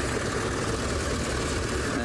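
Open safari vehicle driving along a dirt track: a steady low engine rumble under an even rushing noise of the drive.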